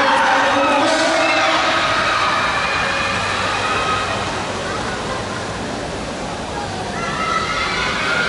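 Commentary over a public-address system, echoing and hard to make out in a large hall, over a steady noise of crowd and hall ambience.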